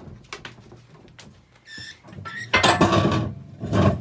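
Budgerigar screeching loudly as it is caught and held in the hand: a short call about two seconds in, then a harsh outburst, and another just before the end.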